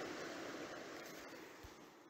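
River water rushing over rocks, a steady hiss that fades out towards the end.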